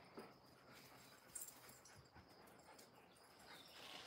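Near silence, with a few faint clicks and scuffs from dogs moving about and sniffing on a concrete floor. A faint steady high tone runs under them.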